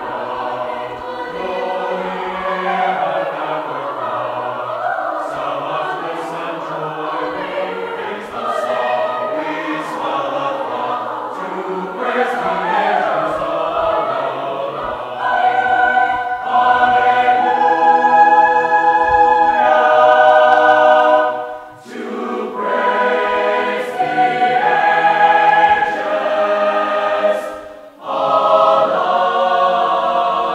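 Mixed men's and women's choir singing in parts, growing louder about halfway through into long held chords, with two brief breaks between phrases near the end.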